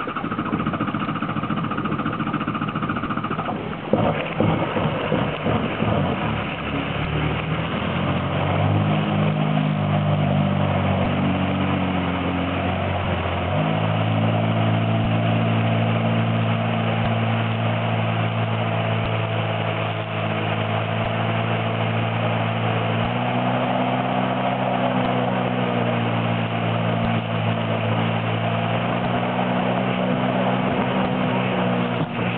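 Honda personal watercraft's four-stroke engine accelerating from slow running up to speed, with jet wash and spray churning behind it. The engine note climbs in steps over the first half, then holds steady at speed, rising a little further later on.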